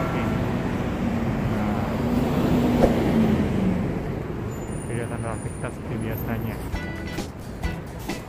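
Road traffic passing on a city street, louder in the first half and then easing off.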